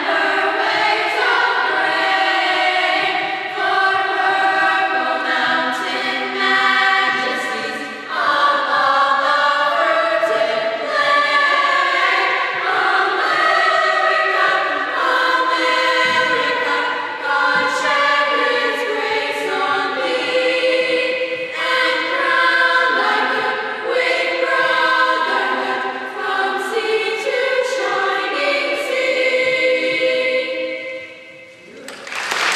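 Middle-school chorus of young mixed voices singing together in held, sustained notes that change every second or two.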